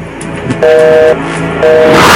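A loud horn-like two-note tone sounding twice, each blast about half a second long, starting and stopping abruptly.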